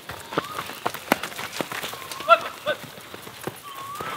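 Cattle hooves trotting over dry leaves and dirt: a scatter of irregular short steps. A few short rising-and-falling whistle-like notes sound over them, the loudest about halfway through.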